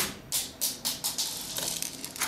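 ABS plastic spring airsoft Desert Eagle pistol being handled and its slide pulled back to cock it: a quick series of short plastic clicks and rattles.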